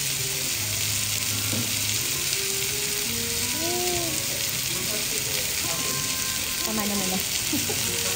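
Steak sizzling on a hot cast-iron plate, a steady hiss that does not let up while liquid is poured from a pitcher over the meat.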